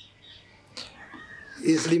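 A faint animal call with a gliding, falling pitch about a second in, during a quiet lull; a man starts speaking near the end.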